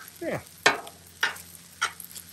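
Metal spatula scraping across a Blackstone steel griddle top while stirring fried rice: three sharp scrapes about half a second apart, over the sizzle of frying.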